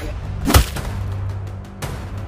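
A sharp, whip-like crack of a wooden fighting stick (daang) striking about half a second in, with a fainter second strike near the end.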